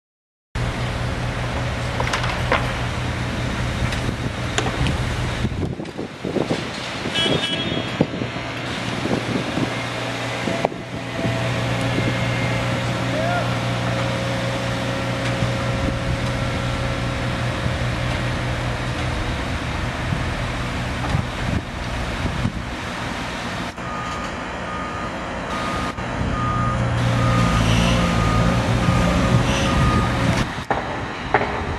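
Construction-site machinery with a diesel engine running steadily, some clanks and knocks, and a repeating warning beep in the last few seconds.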